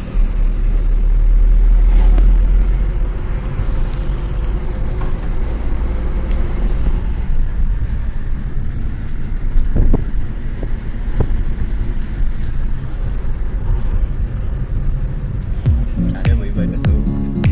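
Car engine and road rumble heard from inside the cabin while driving, a deep steady rumble that swells in the first couple of seconds and then settles.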